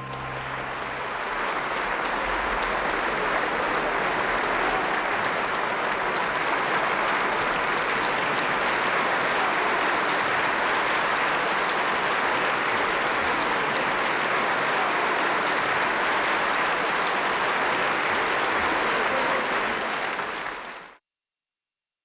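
Large concert-hall audience applauding steadily, swelling as the orchestra's final chord dies away in the first second, then cutting off abruptly about twenty-one seconds in.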